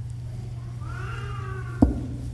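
A faint, high-pitched cry that rises and then slowly falls over about a second, like a meow, followed near the end by one sharp knock. A steady low hum runs underneath.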